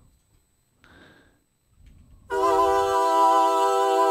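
A sampled female voice from Soundiron's Voices of Gaia library, played in the Kontakt sampler, comes in suddenly about two seconds in and holds one steady sung note. Before it there is near silence.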